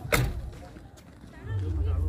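Voices of people talking in the background, with a sharp knock just after the start and a low rumble coming in about one and a half seconds in.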